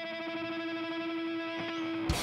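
Electric guitar through an effects rig holding one sustained note, ringing steadily with no drums under it.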